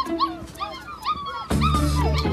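A litter of pit bull puppies yipping and whining, many short high cries overlapping one another. Background music swells in under them about one and a half seconds in.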